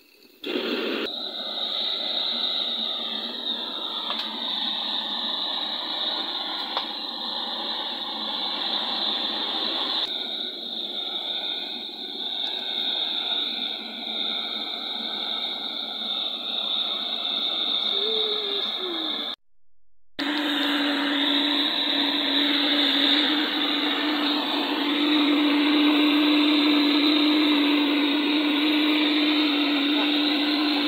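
Brass pressure blowtorch burning with a steady rushing hiss as its flame singes the hair off a goat carcass. The sound breaks off for a moment about two-thirds through, then resumes with a low steady hum under it.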